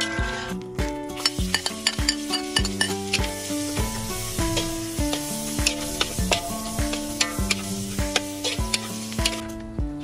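Hot oil sizzling in a metal wok as a metal spatula stirs and scrapes, clinking against the pan many times. The sizzle swells from about a second in and fades near the end, over background music.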